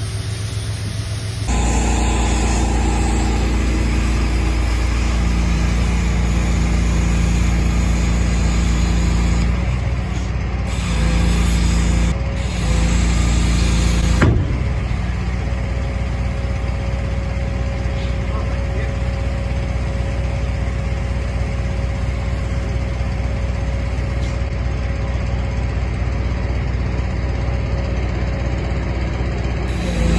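An engine running steadily with a low drone, the sound jumping abruptly several times in the first half.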